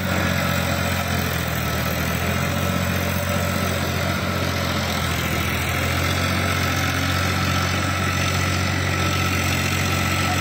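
Farmtrac 6042 tractor's diesel engine running at a steady, unchanging pace while it drives a rotary tiller through wet paddy mud.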